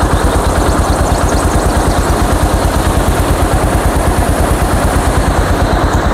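Motorcycle engine running, with a steady, rapid low pulse from its exhaust.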